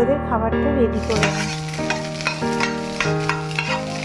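An egg frying in a non-stick pan, sizzling from about a second in, while a spatula scrapes and stirs it as it is broken up. Background music plays underneath.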